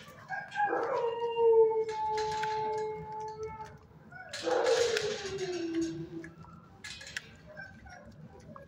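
A dog howling: two long howls, the first held steady for about three seconds, the second shorter and sliding down in pitch at its end.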